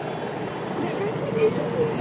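Faint speech over a steady background hum, with no distinct sound event.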